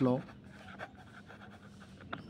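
Pen writing on notebook paper: faint, uneven scratching strokes.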